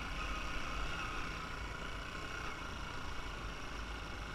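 Motorbike engine running steadily while riding, with wind rumbling on the microphone.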